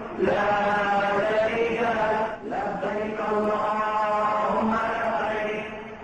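Voices chanting an Islamic devotional chant in long, held notes, in two phrases with a short break about two and a half seconds in.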